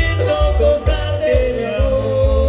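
Live dance music from a marimba orquesta played loud through a PA system, with a steady beat of bass notes about twice a second and a long held melody note in the second half.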